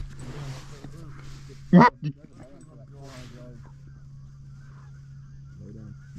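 A single loud, short goose honk about two seconds in, followed by fainter honks around three seconds in.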